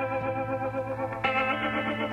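Intro music: sustained, wavering chords, with a new chord struck about a second and a quarter in.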